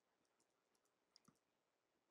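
Near silence, with two faint, short clicks close together a little over a second in.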